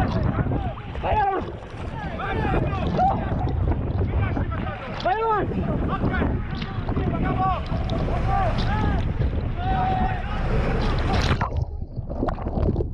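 Children and people in the water screaming and wailing in repeated rising-and-falling cries during a sea rescue, over heavy wind on the microphone and the rush of rough sea around the boat.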